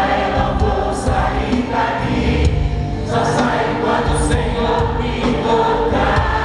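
Large congregation singing a Catholic worship song together with music, many voices in chorus, steady and continuous.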